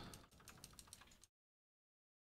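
Faint computer keyboard typing: a quick run of key clicks as a command is entered, cutting off to dead silence a little over a second in.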